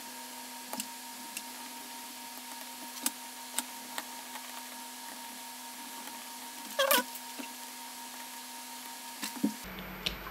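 Scattered small clicks and taps as the plastic parts of a Fitbit Charge 3 fitness tracker are handled and pushed back together with a precision screwdriver bit, with a short squeaky scrape about seven seconds in, over a steady electrical hum.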